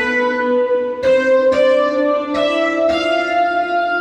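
Roland D-50 synthesizer notes played by breaking a laser harp's beams: about five notes with sharp starts, each ringing on under the next, stepping upward in pitch.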